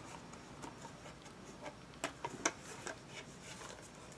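Faint handling sounds of a small taped plastic package being worked at, soft rubbing with a few sharp clicks about two to two and a half seconds in.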